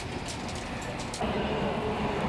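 Building-site noise with light metal clinks, then a little over halfway a louder, steady engine running takes over.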